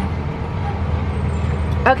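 Steady low hum of an idling vehicle engine. A woman starts speaking near the end.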